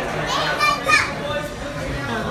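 Restaurant dining-room chatter, with one high-pitched voice calling out briefly about half a second in, rising in pitch, the loudest sound here.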